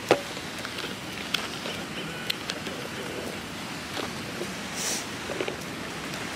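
Steady outdoor background noise with a sharp click at the start and a few fainter scattered clicks and taps, then a brief hiss about five seconds in.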